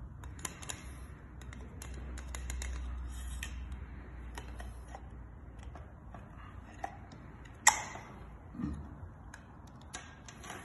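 Plastic parts of a blue 16 A industrial socket and its cable clicking and tapping as they are handled and fitted together, with one sharp louder click a little over three-quarters of the way through.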